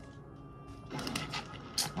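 Soft music from the anime episode's soundtrack with steady held tones. About halfway in, a quick run of sharp crackling clicks from a plastic drink bottle being handled.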